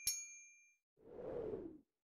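A bright bell-like ding sound effect from a subscribe-button animation, struck once as the cursor clicks the notification bell and ringing out for under a second. About a second in comes a short, rushing noise that lasts under a second.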